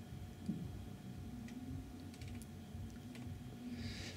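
A few faint, scattered clicks of oscilloscope controls being adjusted, over a low steady hum from the bench equipment.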